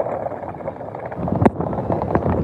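Wind buffeting a phone's microphone outdoors, a steady rumbling noise, with a single sharp click about one and a half seconds in.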